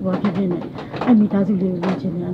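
A person talking in Burmese, in the close, boxy sound of a van's cabin.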